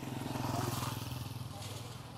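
Motorcycle engine running steadily, a little louder in the first second.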